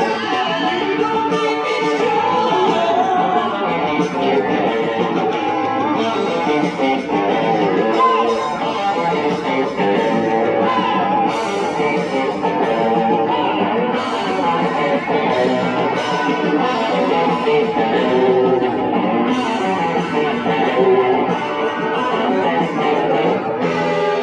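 A live band playing a rock song, with guitars to the fore.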